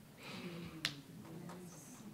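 A single sharp click a little under a second in, over the faint murmur of a quiet room.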